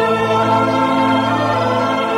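Slow background music in which a choir holds long sustained chords; the chord changes as it begins.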